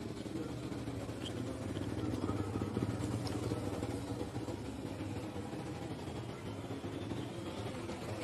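A steady low engine hum, a motor vehicle running, growing a little louder two to three seconds in and then easing off.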